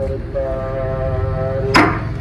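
Sikh religious recitation (Gurbani) sung over a gurdwara's loudspeaker and carried across the rooftops, here one long held note. A brief loud rush of noise cuts across it near the end.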